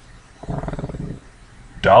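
A man's low, creaky, drawn-out hesitation sound, an 'uhhh' lasting under a second about half a second in. It is followed by a short pause, then speech resumes near the end.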